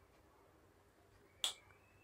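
Near silence while a coat of lipstick is applied, then one sharp smack of lips parting about a second and a half in.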